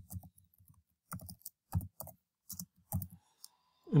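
Computer keyboard typing: a slow, uneven run of separate keystrokes as a word is typed out.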